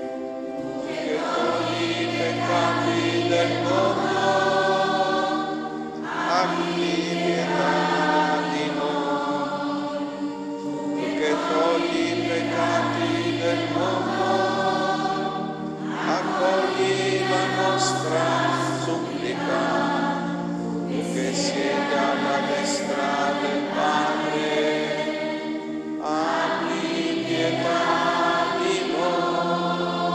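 A church choir of mostly women singing in phrases of a few seconds, with short breaks between them. Underneath, an accompanying instrument holds long, steady low notes.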